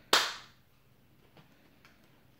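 A single sharp hand clap just after the start, arms swung shut like a crocodile's snapping jaws so the palms smack together, dying away within half a second.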